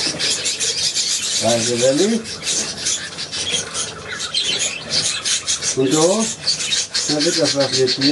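A flock of budgerigars chattering and warbling without a break, a dense stream of fast, scratchy high twitters. A man's low murmured hums come in three times, at about one and a half seconds, at six seconds and near the end.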